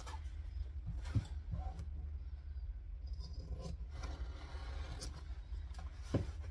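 Fabric pieces and fusible interfacing being handled and laid out on an ironing surface: soft rustling and scraping with a few light taps, over a steady low hum.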